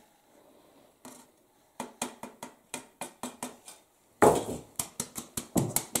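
Wooden-rimmed flour sieve being shaken over a large aluminium pot, its rim knocking in a run of short taps, about three a second, that quicken to about five a second after a louder scraping sound about four seconds in.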